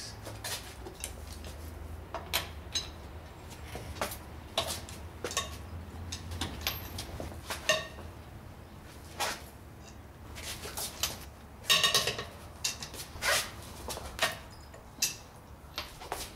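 Steel socket and breaker bar clinking and clanking on a wheel's lug nuts as the nuts are broken loose one after another: scattered sharp metallic clicks and knocks, with a quick rattle about twelve seconds in.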